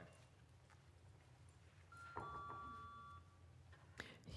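Near silence, broken about two seconds in by a brief electronic chime: two steady tones, the second starting just after the first, held for about a second.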